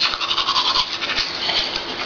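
Teeth being brushed with a manual toothbrush, in rapid back-and-forth scrubbing strokes.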